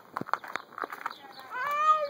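Light footsteps on dry leaves and mulch, then, about three-quarters of the way in, a one-year-old girl's high-pitched drawn-out yell in baby gibberish that bends in pitch.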